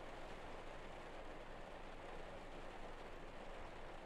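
Faint, steady hiss-like background noise with no distinct sounds in it: room tone and microphone hiss in a pause between spoken passages.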